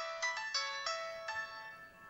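A mobile phone's melodic ringtone plays a run of short notes and fades away about a second and a half in, as the phone is picked up to be answered.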